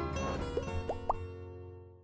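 Short intro jingle of bright plucked-string notes, with three quick rising 'bloop' effects about halfway through, then fading away near the end.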